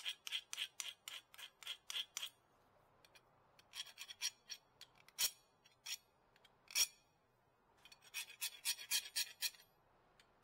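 Hand file rasping across the edge of a new brake pad in quick strokes, about four a second, to make the pad fit its bracket. The filing stops midway, with scattered scrapes and two sharp clicks, then picks up again near the end.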